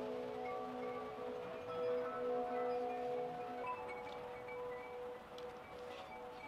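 Chimes ringing: several bell-like tones of different pitches, each held for a second or more and overlapping.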